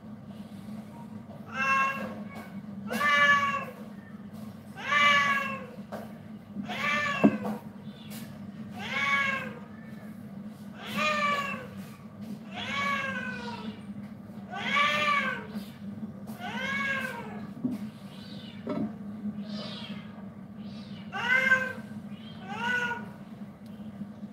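A domestic cat meowing over and over, about a dozen meows roughly two seconds apart, each rising then falling in pitch. A steady low hum runs underneath.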